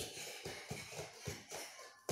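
Bare feet thumping and shuffling lightly on a wooden floor as children dance, a quick run of soft thumps.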